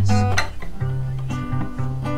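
Acoustic guitar played fingerstyle: low bass notes plucked under ringing chords in a slow pattern, the chord changing about a second in.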